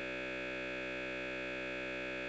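A steady electronic drone: several pitches held at once, unchanging in pitch and loudness, cutting in abruptly.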